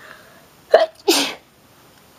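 A person sneezes once: a short voiced catch of breath just under a second in, then a sharp, noisy burst.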